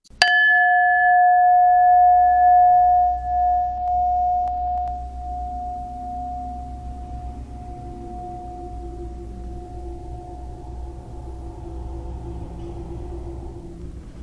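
A bell struck once, then ringing a clear tone that slowly dies away over about ten seconds, over a low steady hum.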